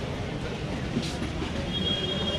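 Busy street ambience: a steady low rumble of traffic with voices of passers-by, a short knock about a second in, and a thin high tone starting near the end.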